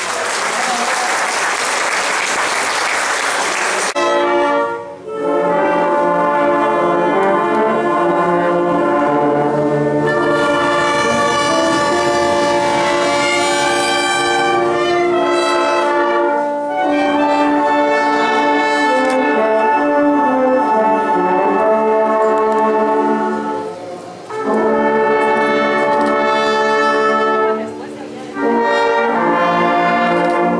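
Oaxacan village wind band of clarinets, saxophones, trumpets, trombones and tuba playing a piece in phrases, with brief breaks between them. It opens with about four seconds of loud rushing noise that cuts off suddenly as the band comes in.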